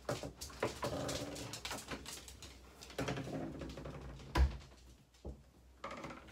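A dog whining in short pitched bouts, with a single loud thump about two-thirds of the way through.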